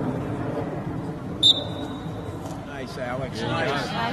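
A referee's whistle sounds once, a short, high blast about a second and a half in that fades away over about a second. Spectators' voices carry on underneath and grow louder near the end.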